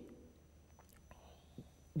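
A pause in a man's speech: his last word trails off at the start, then faint room tone with a low steady hum and a couple of small clicks, before speech resumes at the very end.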